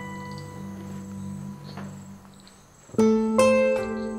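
Soft background music of plucked notes: a chord rings and fades, then a louder run of plucked notes starts about three seconds in.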